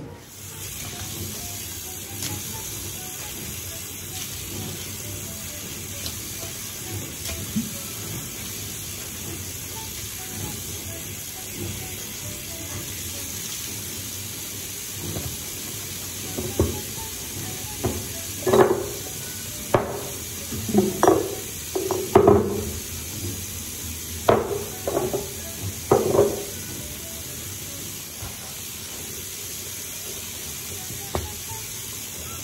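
Steady hiss of tap water running into a ceramic washbasin. From about halfway, a string of short knocks and clatters sounds over it as the items around the tap are handled and wiped.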